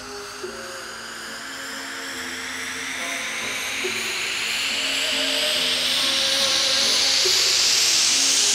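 Build-up of a Vinahouse dance track: a noise sweep rising steadily in pitch and growing louder throughout, over soft held synth notes, with no beat.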